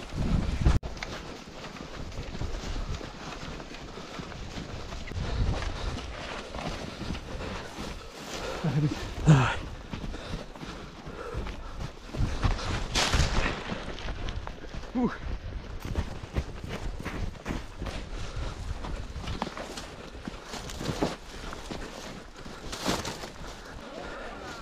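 A runner's footsteps on a snowy trail, a steady run of footfalls close to the microphone.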